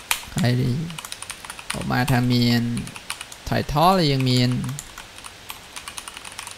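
Computer keyboard typing, quick key clicks throughout, densest in the last second or so. Over it a voice makes three drawn-out sounds with no words, about half a second to a second each.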